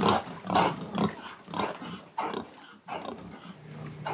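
Pigs grunting in a run of short, irregular grunts.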